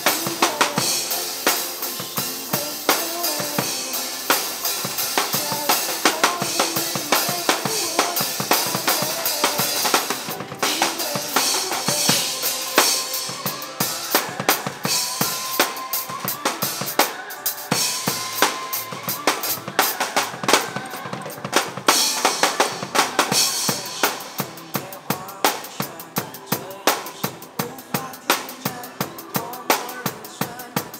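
Acoustic drum kit played live (kick, snare and cymbals) along to a pre-recorded backing track of a pop song. Near the end the backing thins out and the regular drum hits stand out more.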